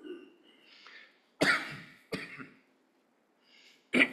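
A man coughing at a microphone: two sudden coughs about a second and a half in, half a second apart, with faint breathy sounds around them and another cough starting at the very end.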